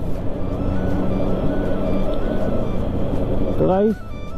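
Motorcycle running at a steady cruise with road and wind noise, under background music with a simple stepping melody.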